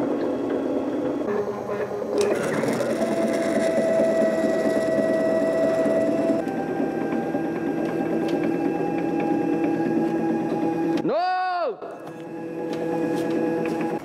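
CNC router's axis motors whining as the gantry drives a Sharpie held in the collet across cardboard, tracing a template outline. The tone holds steady, shifts to a different pitch about six seconds in, and near the end sweeps up and back down in a quick move.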